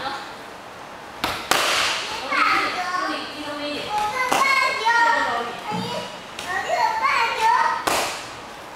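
Kicks smacking a handheld kick paddle: three sharp slaps a few seconds apart, with children's voices in the background.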